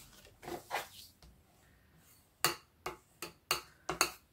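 A scattering of short, light taps and clicks as pieces of card stock are picked up and set down on a craft table, the sharpest about two and a half seconds in.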